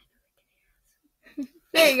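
Near silence for the first second, then a brief faint voice, and a person saying "There you go" near the end.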